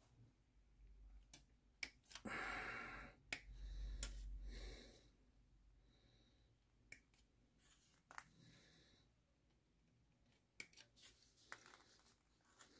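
Quiet handling of plastic model-kit sprues: scattered sharp clicks of parts being snipped off the sprue with cutters, and two longer soft rustles about two and four seconds in.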